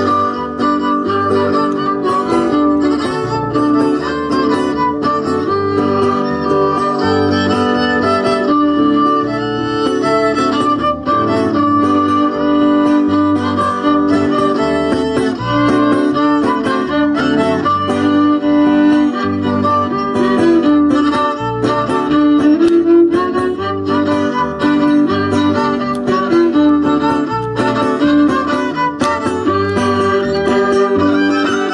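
Lively folk dance music from a string ensemble, a violin carrying the melody over strummed guitar, with a bass line that moves steadily back and forth between notes.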